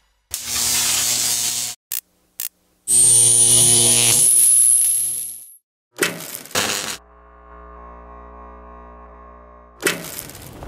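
Title-sting sound effects of electrical noise: bursts of crackling buzz, two short clicks, a loud burst with a high whine rising in pitch, then a quieter steady electrical hum near the end.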